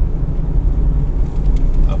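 Inside a Toyota Rush driving fast at night: a steady, loud, low engine and tyre rumble.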